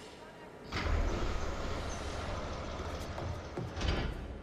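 Aircraft rear cargo ramp operating: a hiss about a second in, then a steady low mechanical rumble, with a knock near the end.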